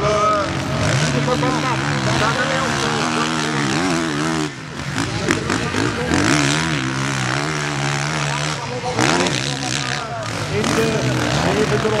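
MX1 motocross motorcycle engines revving hard and backing off over and over as the bikes race the sand track, the pitch repeatedly rising and falling, with a brief lull about four and a half seconds in.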